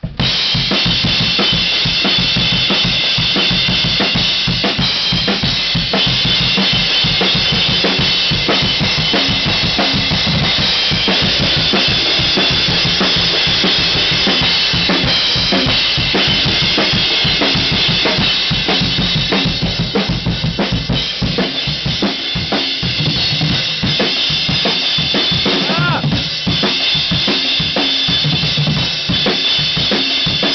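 Acoustic drum kit played fast and loud: dense bass drum and snare hits under a constant wash of cymbals, starting suddenly on the first beat.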